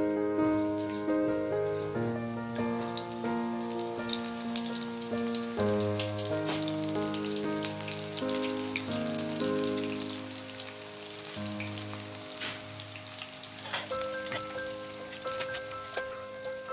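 Pakora batter frying in hot oil, a steady crackling sizzle that starts as the first pieces drop in and stays busy as more are added. Background keyboard music plays over it throughout.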